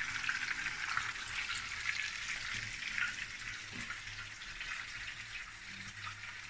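A breaded cutlet shallow-frying in oil in a pan: a steady crackling sizzle that grows slightly quieter over the few seconds.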